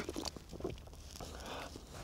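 Faint mouth sounds of a person who has just sipped beer: a few short smacks and clicks in the first second.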